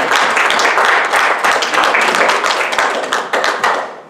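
Congregation applauding, many hands clapping together in a dense crackle that fades near the end.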